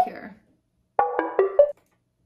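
A synth pluck one-shot sample played back through Ableton's Sampler: a quick run of several short pitched notes about a second in, lasting under a second and stopping abruptly.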